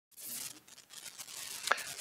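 Faint rustling and crackling picked up close to a clip-on lapel microphone, with scattered small clicks and one sharper click near the end.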